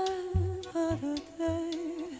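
Live Balkan Romani band music: a single wavering melody line with ornamented turns over deep electric bass notes and drum hits.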